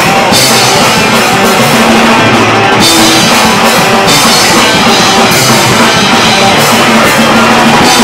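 Live punk rock band playing an instrumental passage at full volume: electric guitars through amplifiers, bass and a drum kit with crashing cymbals.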